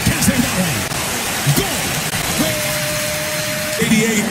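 Football match sound from the pitch: scattered shouting voices of players over steady stadium background noise, with a held steady tone about halfway through that lasts over a second.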